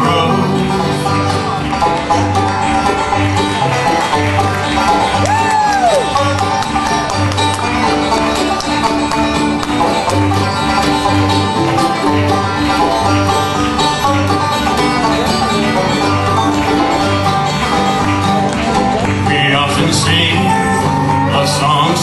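Bluegrass band playing an instrumental break with no singing: banjo and acoustic guitar over regular upright bass notes.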